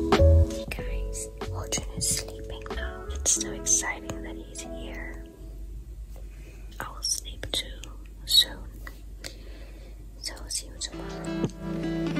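A woman whispering close to the microphone over soft background music; the music drops away in the middle and returns near the end.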